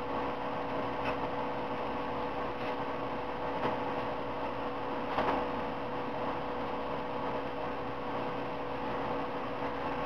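Steady background hum with a faint fixed tone, like a small motor or appliance running, and a few faint clicks in the first half.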